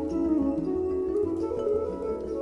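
Instrumental background music: a melody of held, changing notes over a low bass line.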